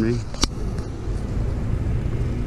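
Honeybees humming around an open hive, a steady low drone, while a frame full of bees is held up. A single sharp click about half a second in.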